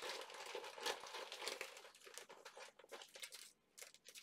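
Small clear plastic parts bag crinkling as it is handled and opened, with many small crackles. It is busiest in the first second or so, then thins out toward the end.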